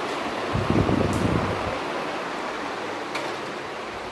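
Low rumbling handling noise from a phone microphone as it is carried while walking, loudest between about half a second and a second and a half in, over a steady hiss; a single click about three seconds in.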